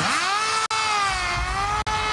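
Leleka-100 fixed-wing reconnaissance drone's motor and propeller whining in flight: the pitch rises sharply at the start, sags slightly, then climbs again near the end.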